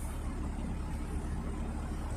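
Narrowboat engine running steadily under way, a low even hum.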